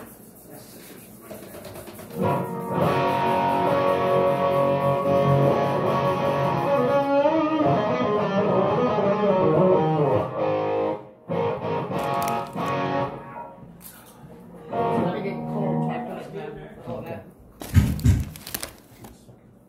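Guitar played through an effects unit: chords ringing out for about eight seconds starting two seconds in, then shorter stretches of playing. A loud sudden sound comes just before the end.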